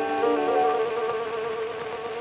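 Violin holding a long, slowly fading note as the accompanying chord breaks off at the start, on a 1903 acoustic recording with a thin, buzzy tone, steady surface hiss and no high treble.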